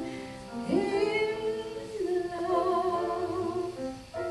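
Live song performance: a woman singing with accompaniment, holding long notes, one sliding up into place about a second in, and a wavering higher note near the end.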